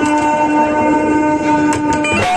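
A keyboard instrument holding one steady sustained chord, several notes sounding together without wavering, cut off just at the end.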